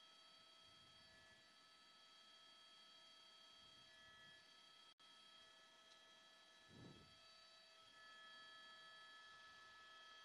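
Near silence: a faint steady high-pitched hum of several thin tones, with one brief soft low thump about seven seconds in.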